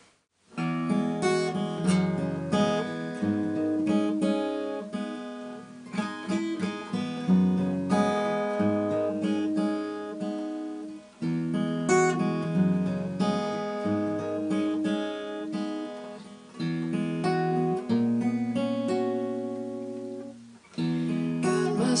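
A Martin steel-string acoustic guitar is played solo, its chords picked and strummed in a steady accompaniment pattern. It comes in about half a second in, with short breaks about halfway through and near the end.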